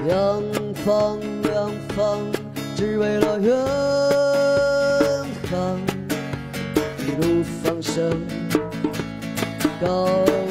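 A man singing to his own strummed acoustic guitar, in short sung phrases with one long held note about halfway through.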